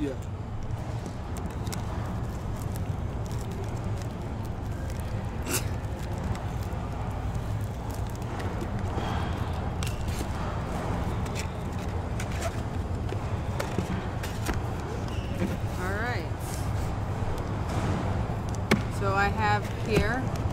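Plastic shrink-wrap crinkling and tearing in short, sharp crackles as it is peeled off a sealed box of trading cards. A steady murmur of crowd chatter runs underneath.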